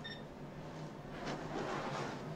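Faint, steady drone of a field of Sportsman stock cars rolling slowly in formation under caution.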